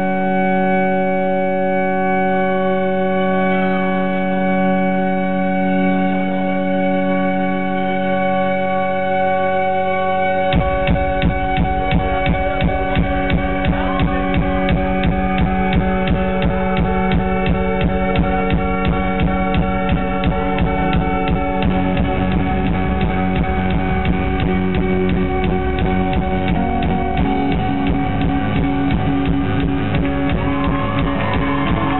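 Live synth-led cold-wave band music. Sustained synthesizer chords are held for about ten seconds, then a steady, fast drum beat enters, with the bass thickening further on.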